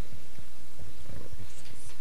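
Low, irregular rumbling and soft thumps over a steady low hum, typical of a live microphone being handled.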